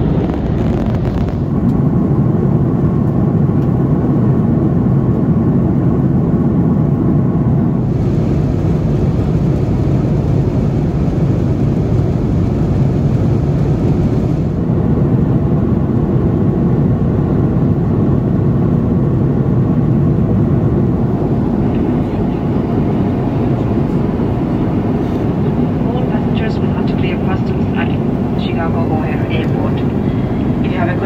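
Steady low rumble of an Airbus A330-300 cabin in cruise: engine and airflow noise, its tone shifting slightly a few times. A voice comes in over it near the end.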